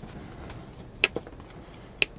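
Quiet handling of a potted plant and potting mix, with one sharp click about a second in and a fainter click just after.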